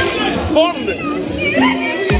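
Several women's voices laughing and shouting excitedly, over background music.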